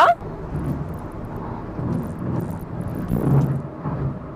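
Road and tyre noise inside the cabin of a Hyundai Venue small SUV at highway speed: a steady low rumble. The driver judges it somewhat loud but quiet for a small SUV, about the level of a compact sedan.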